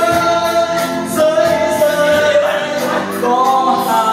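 A man singing karaoke into a handheld microphone over a backing track with a steady beat, holding long notes.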